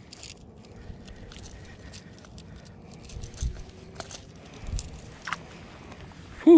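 Close handling noise as a jerkbait's treble hook is worked free of a striped bass's mouth: scattered small clicks and scrapes, with a few dull low bumps.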